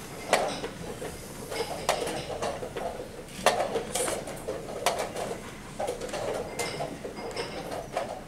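Wooden chess pieces knocked down on the board and chess clock buttons pressed as moves are played quickly, sharp knocks about once a second.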